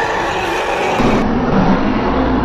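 Loud, dense film sound effects from an animated dragon action scene, changing abruptly about a second in.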